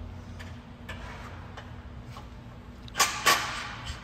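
Workshop sounds: a steady low hum with faint clicks, then two sharp knocks about a third of a second apart about three seconds in.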